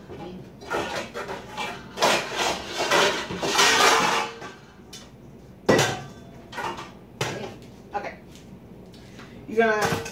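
Kitchen bowls and dishes clattering as a big bowl is handled: a dense rattling clatter for the first few seconds, then two sharp knocks a second and a half apart.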